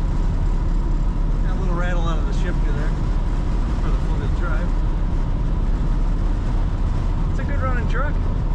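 Steady low engine and road rumble inside the cab of a 1984 Dodge D150 pickup cruising at highway speed.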